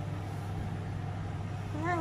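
A steady low hum of indoor background noise, with a woman's voice starting near the end.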